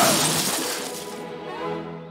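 A loud crash noise dies away over the first second and a half, under cartoon background music. Musical notes come through about a second in.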